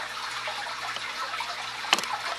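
Steady trickling and bubbling of aquarium water, the running sound of the tank's filtration. A single sharp click comes just before the end.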